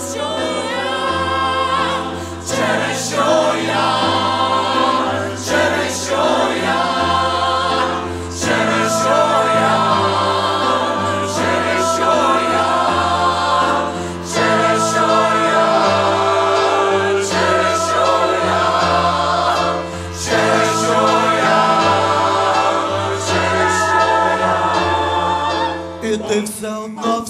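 Mixed choir of men's and women's voices singing with keyboard accompaniment, phrases broken by short breaths about every six seconds.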